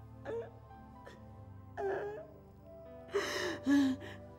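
A woman sobbing and wailing in a few short cries, the loudest near the end, over soft sustained background music.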